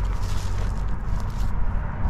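Uneven low rumble of wind buffeting the microphone outdoors.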